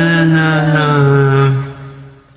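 A singer holding one long final note, the pitch stepping down slightly early on, then fading away near the end.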